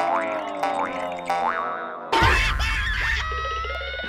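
Cartoon sound effects over music: a few quick rising springy boing swoops in the first two seconds, then a sudden loud cartoon-gorilla roar about two seconds in, giving way to a held tone near the end.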